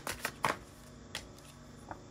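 Oracle cards being shuffled and handled: a quick run of card snaps and flicks in the first half second, then two single clicks as a card is pulled from the deck.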